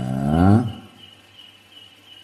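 A man's voice trails off on a drawn-out syllable in the first moment. Then comes a short pause in which only a faint, steady, high pulsing chirp of an insect is heard in the background.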